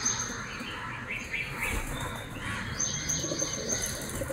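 Small birds chirping: a run of high, thin, evenly repeated notes at the start and again about three seconds in, with a few lower chirps between.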